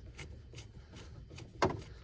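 Screwdriver scraping and clicking against a plastic drain plug as it is worked loose, with one sharper knock about one and a half seconds in.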